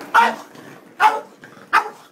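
Boston Terrier barking three times, short barks less than a second apart, worked up over a ball he can't get out of a cat's circular track toy.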